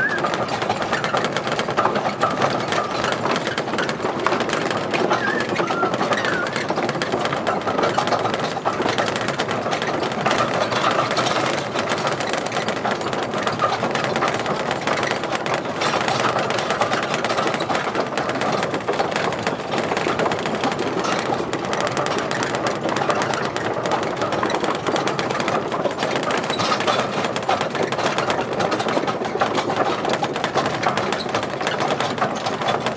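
Small open-carriage jetty train running along the jetty, its motor and carriages making a steady, rapid rattle.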